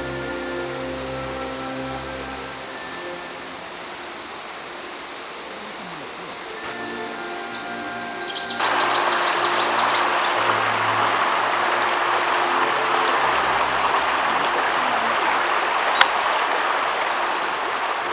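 Background music throughout. About halfway in, the steady rush of a shallow river running over rocks comes in loud beneath it. A few short bird chirps sound just before and as the water comes in, and there is a single sharp click near the end.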